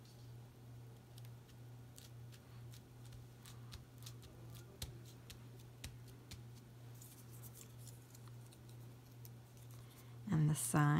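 Faint, scattered light clicks and taps of fingers pressing foam-mounted cardstock pieces onto a card, over a steady low hum.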